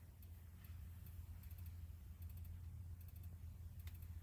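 Very quiet steady low hum with a few faint, light clicks scattered through it.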